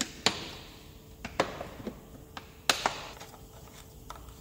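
Scattered light clicks and knocks, about seven in all, from plastic parts being handled over the engine: the oil jug, the funnel and the oil filler cap.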